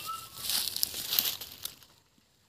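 Fern fronds and leafy undergrowth rustling and crackling as they are handled and brushed through, with irregular sharp crinkles that fade out near the end.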